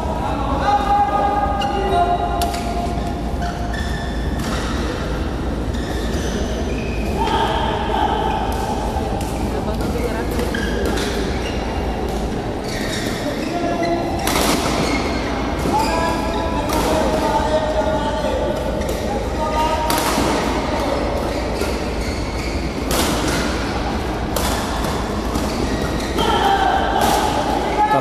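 Badminton hall sound: sharp racket hits on shuttlecocks and thuds at irregular intervals, with voices of players and people in the hall and a steady low hum.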